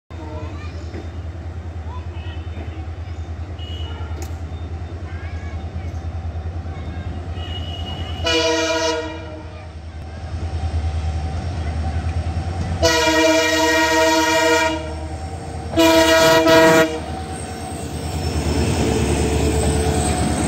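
Diesel locomotive (WDP-4 class) sounding its horn three times as it approaches, with a short blast about eight seconds in, a long one about thirteen seconds in and a shorter one about sixteen seconds in, each a chord of several tones. Beneath them runs the steady low throb of its diesel engine.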